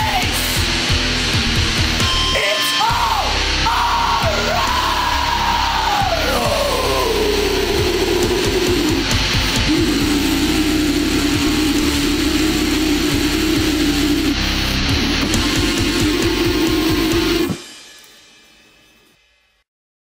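Heavy rock music with distorted electric guitar and drums, a long held note in its last stretch. About 17 seconds in the music cuts off and its ring dies away to silence.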